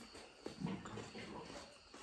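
A person chewing a mouthful of rice and curry, with soft, irregular chewing and mouth sounds that are loudest in the middle.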